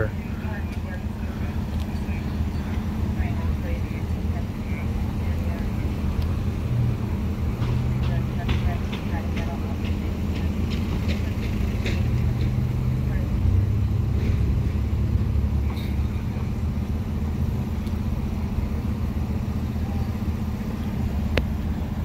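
A large vehicle engine idles steadily with a low rumble throughout, and faint voices talk in the background.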